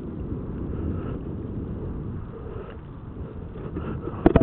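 Steady low rumble of wind buffeting an outdoor microphone, rising and falling without a break.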